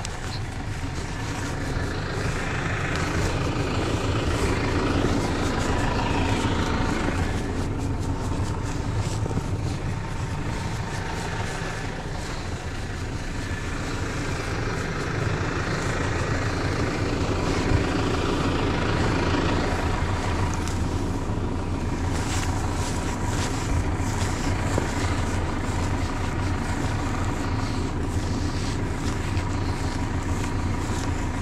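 Tractor diesel engine running steadily at idle, with rustling and crunching close by.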